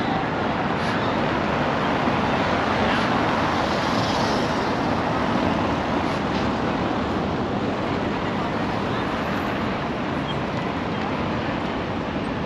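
City traffic on a cobbled road: a steady wash of cars and buses with tyre noise on the cobbles and the voices of a crowd mixed in. It swells a little a few seconds in as a car passes close.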